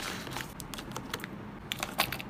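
Small plastic mask-kit pieces (a bowl, a measuring spoon, a spatula) clicking and tapping as they are set into a cardboard box: a quick run of light, sharp clicks.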